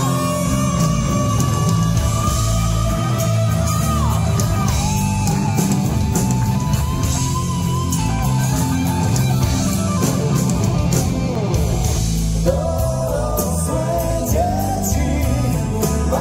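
Heavy metal band playing live in a club: loud electric guitars, bass and drums with a man singing. A long held high note bends down and falls away about four seconds in.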